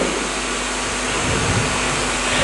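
Steady rushing background noise, like a running fan, with a faint low hum.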